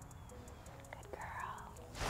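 Quiet background hum, with a faint breathy sound in the second half, like a soft breath or whisper.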